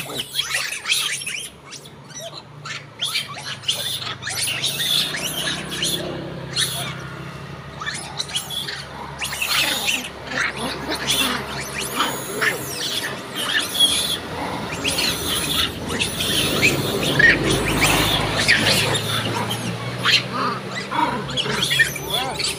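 A troop of long-tailed macaques giving short, scattered chirps and squeals as they crowd around for food, over the low hum of passing road traffic that grows louder late on.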